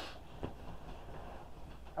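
Rustling of clothing and couch cushions as a person twists round on a fabric couch, with a single soft knock about half a second in.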